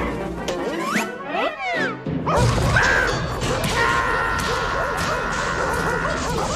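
Cartoon soundtrack: score music with comic sound effects, a run of quick whistling glides up and down about a second in, then a sudden crash just after two seconds, followed by music with long held high notes.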